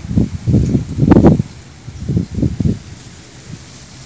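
Rice plants rustling and brushing against the phone's microphone as it is moved among the stalks, in several loud, low bursts, the strongest about a second in.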